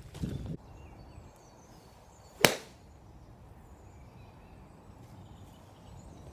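A single sharp crack of a golf club striking a ball off a driving-range mat, about two and a half seconds in.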